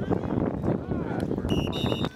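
Spectators' voices and crowd noise at a football game, then, about one and a half seconds in, a referee's whistle shrills steadily for about half a second.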